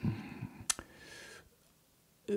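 A single sharp mouth click about two-thirds of a second in, followed by a short, faint breath between spoken phrases, then dead silence where the voice track is cut.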